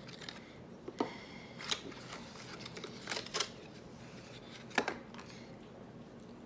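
Small plastic condiment cups with lids and their cardboard box being handled: light rustling with a handful of sharp plastic clicks, the loudest near the end.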